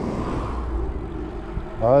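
Wind rush on the microphone of a bicycle rolling downhill, with a car going past close by in the first moments; a man starts speaking near the end.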